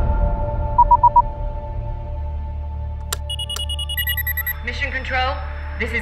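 Spacecraft cockpit sound effects: a low steady hum under a faint steady tone, with a quick run of four short beeps about a second in. Two sharp clicks and a series of higher electronic beeps follow around three to four seconds, and a voice begins near the end.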